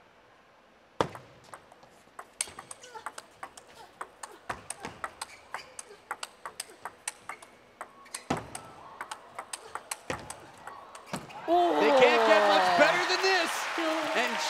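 A table tennis rally: the ball clicks sharply off the rackets and the table, roughly two to three times a second, for about ten seconds. Near the end the rally stops and a crowd breaks into loud cheering.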